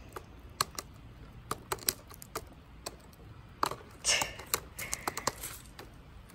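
Popcorn kernels popping inside a foil-dome popcorn pan held over a wood fire: irregular sharp pops, coming faster in the second half.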